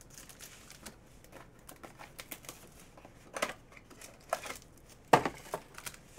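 Clear plastic wrapper on a trading-card pack crinkling as it is handled and peeled off, with sharp crackles, the loudest near the end.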